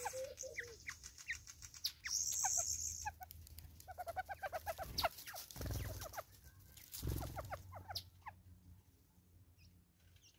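Wild birds calling around a seed feeder: scattered high chirps and short call notes, with a quick run of short repeated notes about four seconds in. A couple of low thumps come in the middle, and the calls thin out near the end.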